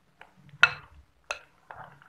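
Spatula knocking and scraping against a glass mixing bowl while stirring thick custard with chopped fruit: several short, sharp clinks, the loudest just over half a second in, with softer stirring between.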